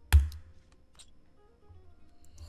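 A single sharp click just after the start, then a couple of faint ticks, over faint background music.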